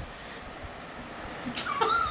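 Faint steady fan noise from the running DLP optical engine's lamp cooling fan, then a high-pitched, wavering call that rises in pitch, starting near the end.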